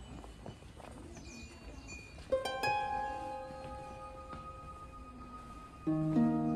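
Background music of plucked strings, harp-like: a quiet start, then two plucked notes about two seconds in that ring on and slowly fade, and a louder plucked chord near the end.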